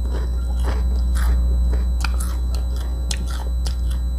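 Close-up chewing of a mouthful of crunchy fried peanuts, an irregular run of crisp crunches, over a steady low hum.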